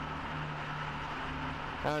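Steady low background hum of a parking garage, with no sudden events; a man starts speaking near the end.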